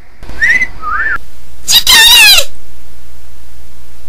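High-pitched squeaky cries: two short rising squeaks, then a louder warbling squeal that drops in pitch at its end, about halfway in. A steady hiss follows.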